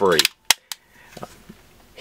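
Magazine being worked in the grip of an Honor Defense Honor Guard 9mm pistol: a sharp click about half a second in, a second one just after, then a few faint clicks.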